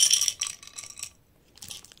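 Small wooden letter tiles rattling and clinking in a frosted glass cup and tipped out onto a cloth: a dense burst of clinks, then scattered clicks as the tiles settle, with a few more near the end.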